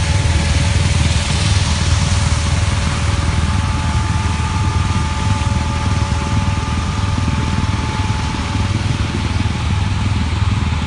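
Tractor engine running steadily under load, driving a ditch sludge sprayer that pumps mud out of the ditch and throws it across the field. A low rumble with a thin steady whine on top.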